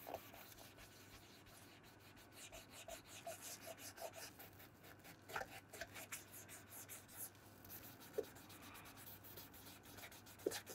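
Faint, irregular rubbing and dabbing of a cotton tip held in tweezers against the white leather upper of a sneaker, with a few small clicks, the sharpest about 8 seconds in.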